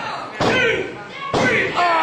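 Two slams of bodies hitting the wrestling ring's canvas, about a second apart, each followed by shouting voices.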